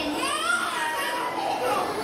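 Ambient children's voices and chatter in a crowded, echoing room. One high-pitched child's voice rises and falls in the first second.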